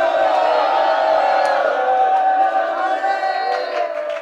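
A congregation of many voices calling out together in one long, sustained cry, fading near the end.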